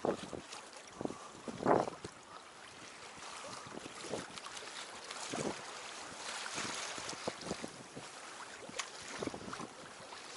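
Water lapping against the side of a small boat, with wind on the microphone and a few short knocks or splashes; the loudest comes a little under two seconds in.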